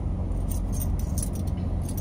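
Light metallic clinks and jingles from a dog harness's buckles and clips as it is handled, over a steady low hum inside a car.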